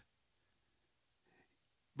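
Near silence: room tone, with a very faint sound about one and a half seconds in.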